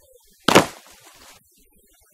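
A single loud impact sound effect for a blow landing about half a second in, dying away over nearly a second.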